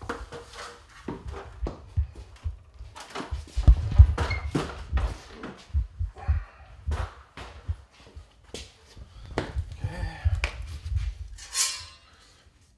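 Footsteps and irregular knocks and thumps with a low rumble underneath, typical of a hand-held camera being carried and handled across a concrete floor.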